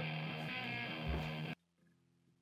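Electric guitar note held through an amplifier, ringing steadily, then cut off abruptly about a second and a half in.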